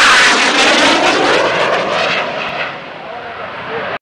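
Jet noise from a Northrop F-5 fighter's twin turbojet engines on a low pass: loudest as it goes overhead at the start, with a wavering, swishing sweep as it passes, then fading as it flies away.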